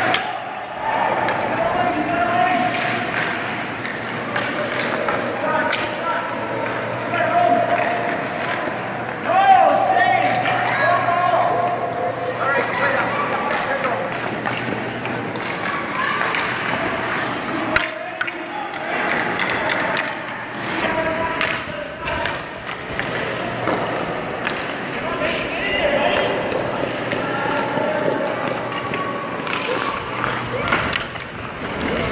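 Youth ice hockey on a rink: indistinct children's voices and calls, skate blades scraping the ice, and a sharp knock of stick or puck a little after halfway, over a steady low hum.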